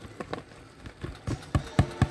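Irregular light knocks and clicks, about seven in two seconds, the loudest near the end, as chopped jalapeño is added to a skillet of raw ground turkey.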